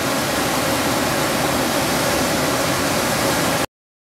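Rushing water of a small waterfall pouring over rock ledges into a river pool: a steady, full hiss that cuts off suddenly near the end.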